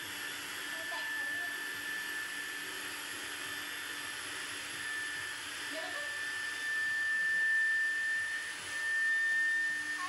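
Electric air pump running steadily while inflating a vinyl inflatable pool: a constant high whine over a rush of air, a little louder in the second half.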